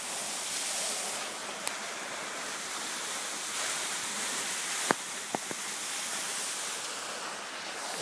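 Glacial meltwater waterfall pouring out of an ice cliff: a steady, even rush of falling water, with a few short sharp clicks around the middle.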